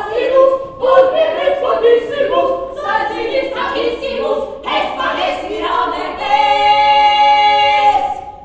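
A trio of women's voices singing a medieval song unaccompanied in harmony, moving through short notes and then holding one long chord for the last couple of seconds.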